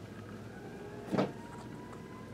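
Quiet room tone while hands handle a stack of glossy trading cards, with one brief soft sound about a second in.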